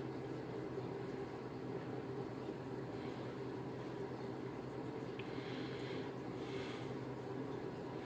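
Small cooling fan running steadily, a faint hum with a light hiss.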